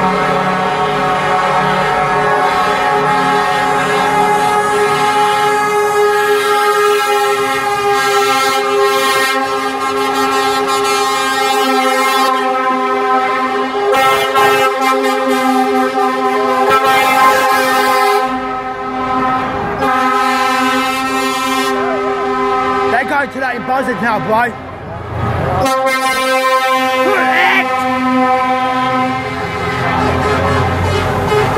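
Lorry air horns sounding long and steady, several overlapping, as trucks in a convoy pass one after another. The horns break off only briefly twice in the second half.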